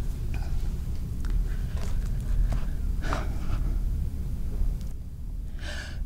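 Steady low room rumble with faint rustles and small clicks, and a short breath intake near the end just before a woman starts singing unaccompanied.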